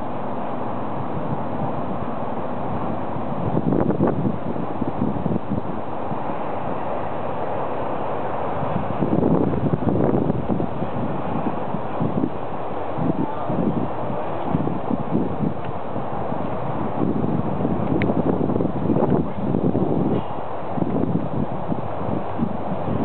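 Wind buffeting the microphone: a steady rush with stronger gusts now and then.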